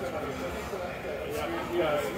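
People talking indistinctly, with no clear words.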